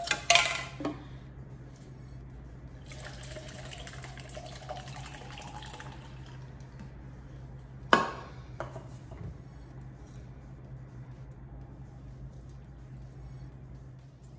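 A mixed cocktail being poured into a cup for about three seconds, the filling note rising slightly as the cup fills, then a sharp knock about eight seconds in as a container is set down on the counter.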